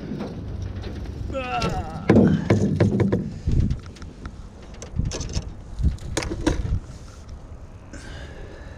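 Knocks and clicks of handling in a small aluminium boat, the loudest cluster a few seconds in, over a low rumble of wind on the microphone.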